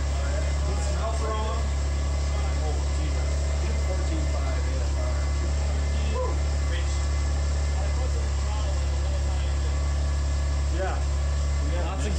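Subaru EG33 3.3-litre flat-six idling on a freshly fitted Megasquirt3 aftermarket ECU: a steady low drone. It holds sync but sounds funky and wrong, which the crew suspect means it is not burning its fuel properly.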